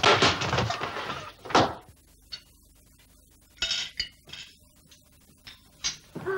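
A clatter of knocks and crashes from hard objects for about two seconds, then a few scattered light clinks.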